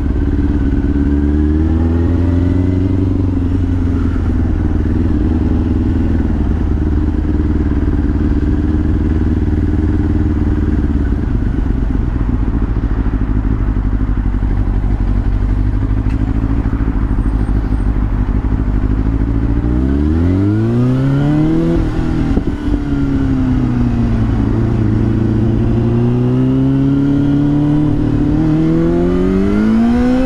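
Yamaha YZF-R6 motorcycle's 600 cc inline-four engine running at a fairly steady note. About twenty seconds in it revs up sharply, drops back, then builds again near the end.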